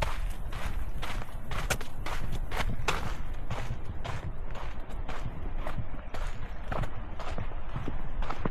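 Footsteps on a sandy dirt hiking trail at a steady walking pace, about two steps a second.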